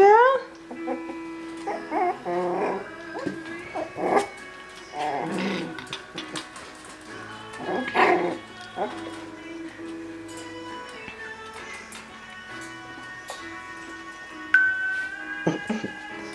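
Coton de Tulear puppies yipping and barking in short bursts while they play, the loudest yelp about halfway through, over background music with long held notes.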